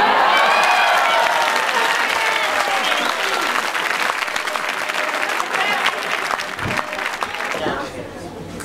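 Audience applauding, with voices calling out over the clapping in the first few seconds; the applause slowly dies away and stops just before the end.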